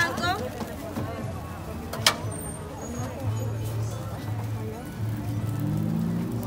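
Voices and faint music in the background at a street-food stall, with one sharp knock about two seconds in and a low steady hum from about halfway on.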